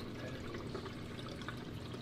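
Reef aquarium water circulating: a steady trickle and splash of moving water.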